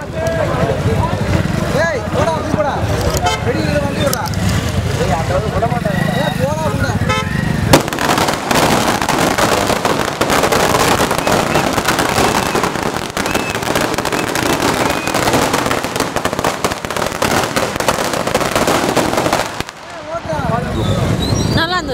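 A string of firecrackers going off: a single loud bang about eight seconds in, then a dense, rapid crackle of many small bangs. Voices and shouting from the crowd are heard through the first part.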